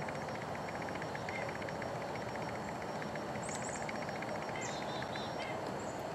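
Quiet outdoor background: a steady faint hiss, with a few faint short high chirps in the second half.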